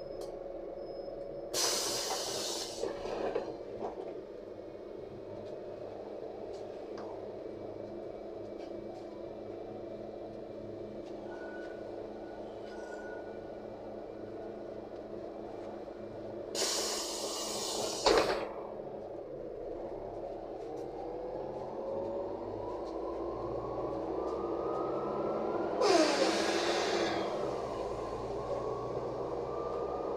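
Inside a LiAZ 5292.67 city bus: a steady drone from the bus at a stop, broken by short, loud air hisses about two seconds in and again around seventeen seconds, the second ending in a sharp knock. From about twenty seconds the bus pulls away with a whine rising in pitch as it gathers speed, and there is another air hiss near twenty-six seconds.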